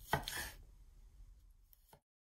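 Chef's knife slicing through blewit mushrooms onto a wooden cutting board: one sharp knock of the blade on the board with a short slicing stroke just after the start, then quiet with a faint click near the end.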